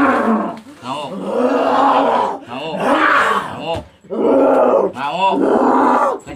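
A person crying out in a string of loud, drawn-out howls and groans, several in a row with short breaks, the pitch wavering and warbling between them. These are wordless cries, not speech.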